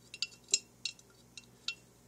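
Glass containers in a pan on the stove clinking lightly, about five short, sharp clinks at irregular intervals.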